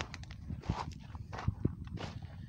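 Footsteps on a wet gravel and dirt track, a few irregular steps.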